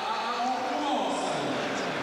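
A man's drawn-out exclamation falling in pitch, over the noise of a basketball arena crowd reacting to a dunk attempt.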